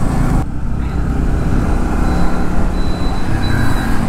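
Motorcycle engine running and wind rumbling on the rider's microphone while riding along a road, with other motorbike traffic passing close by.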